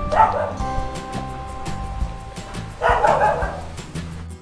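A dog barking twice, once at the start and again about three seconds later, over background music with a steady beat.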